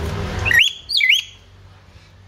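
Hill myna giving two short, loud whistles about half a second apart, each swooping up and then down in pitch.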